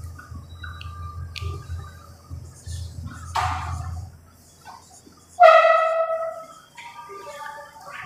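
A whiteboard duster rubbing across the board, then a marker squeaking on the whiteboard while writing. The loudest is one drawn-out squeak about five and a half seconds in, followed by several shorter squeaks near the end.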